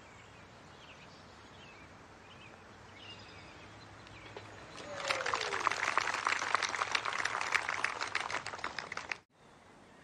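Faint birdsong over quiet outdoor ambience, then, about halfway, a golf gallery applauding a holed putt; the clapping cuts off suddenly near the end.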